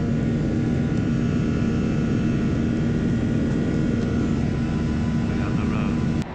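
Cabin noise of a jet airliner in flight, heard from inside by a window seat: a steady engine and airflow rush with a low hum and a few faint steady whining tones above it.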